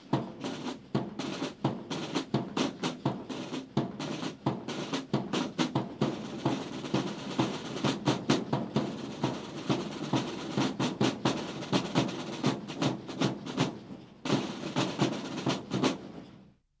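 Military drum corps of snare drums and a bass drum playing a rapid marching cadence with rolls. The drumming dips briefly about two seconds before the end, then picks up again.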